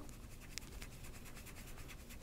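Faint scratching of a paintbrush working Inktense paint on a palette, picking up and mixing colours.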